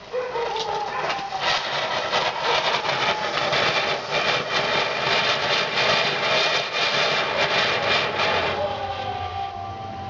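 Ground fountain firework spraying sparks: a loud, steady hiss with fine crackling, with faint whistling tones running through it. It starts suddenly and dies down after about eight and a half seconds.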